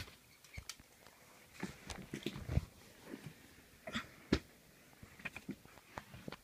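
Handling noise from plush toys being picked up and moved by hand close to the microphone: scattered soft knocks and bumps with brief fabric rustling, the sharpest at the start and about four seconds in.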